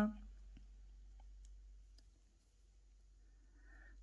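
Near silence with a few faint, soft clicks spread over a couple of seconds: a steel crochet hook and cotton thread being worked by hand.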